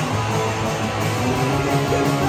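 Punk rock band playing loud, with strummed electric guitar over bass.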